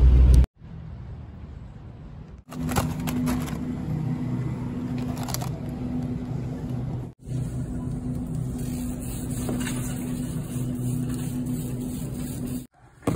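Steady low hum of a supermarket's frozen-food aisle, with a few brief clicks and knocks from handling, broken by sudden cuts.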